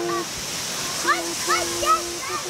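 Children's voices calling out, with a held note and a few short rising cries, over a steady hiss.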